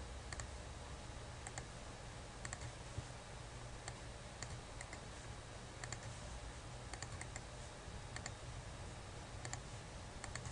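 Scattered faint clicks of a computer mouse's buttons, a dozen or so spread unevenly, some in quick pairs, over a steady low hum.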